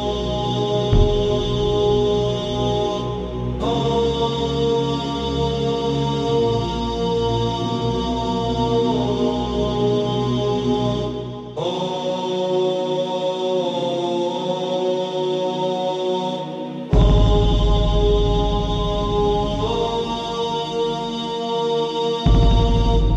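Slow, wordless chant-like background music of long held tones over a deep bass drone, the chord shifting every few seconds. The bass drops out for a few seconds past the middle, then returns louder.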